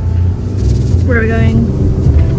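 Steady low rumble inside a car's cabin as it rides, with a short voice sound about halfway through.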